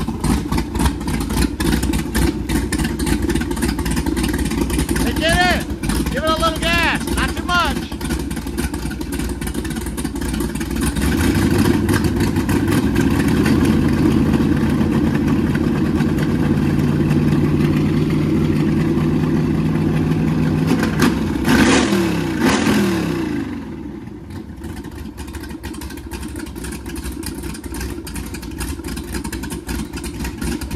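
Skip White 551 hp small-block Chevrolet stroker V8 in a Donzi 16 boat running on first start-up. About a third of the way in the revs rise and hold for about ten seconds, then fall away. It settles back to a smooth, quieter idle.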